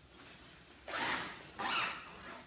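Zipper of a disposable protective coverall being pulled up, in two short strokes about half a second apart.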